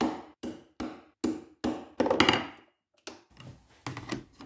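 A hammer striking a metal punch held on leather over a cutting mat: about six sharp blows, roughly two and a half a second, stopping about two and a half seconds in. Lighter knocks and rubbing follow.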